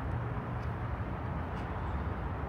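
Steady low rumble of outdoor urban background noise, even and unbroken, with no distinct event standing out.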